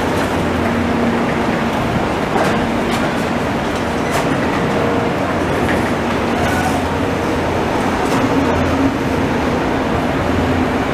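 Israel Railways passenger train rolling past close by: a steady rumble of wheels and coaches on the rails, with a few sharp clicks along the way.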